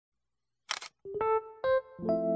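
A camera shutter click, a quick double snap, followed by three short keyboard notes stepping upward as the music begins.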